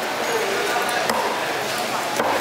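Broad fish knife cutting through a raw fish fillet on a wooden chopping block, with a couple of light knocks of the blade against the wood, over steady market chatter.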